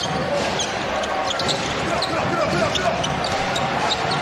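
A basketball being dribbled on a hardwood court, with several short, high sneaker squeaks over the steady murmur of an arena crowd.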